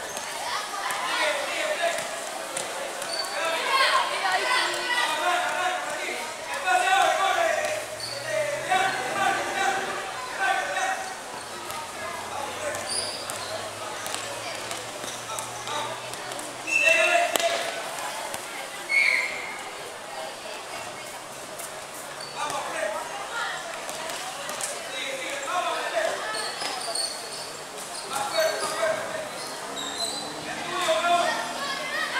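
A basketball bouncing as it is dribbled on a concrete court, with short sharp knocks, under indistinct shouting and chatter from the players and spectators.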